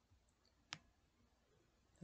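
A single computer mouse click, about three quarters of a second in, against near silence.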